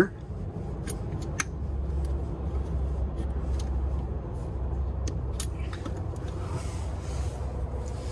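A few light clicks and knocks as the entry step's hinged lid is unlatched, lifted and set back, over a low steady rumble.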